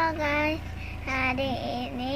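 A young girl's voice calling out a drawn-out, sing-song greeting, "haloo guys", in two stretched syllables with gliding pitch.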